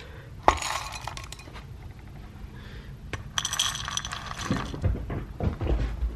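Dry dog kibble poured from a plastic scoop into a ceramic bowl, the pieces clattering against the bowl in two bursts, one about half a second in and a longer one a little past the middle. A few low thumps follow near the end.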